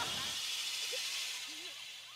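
Gas hissing from a cylinder through the fill hose into a weather balloon, fading steadily as the flow tapers off.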